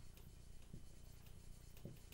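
Dry-erase marker writing on a whiteboard: faint strokes of the felt tip as letters are formed.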